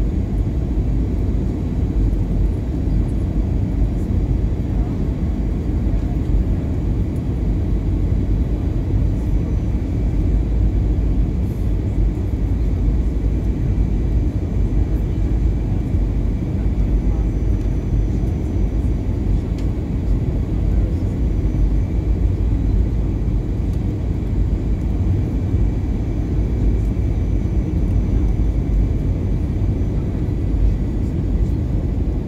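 Steady cabin noise of an Airbus A320 jetliner on final approach: the low rumble of its engines and rushing airflow, with a faint steady high whine on top.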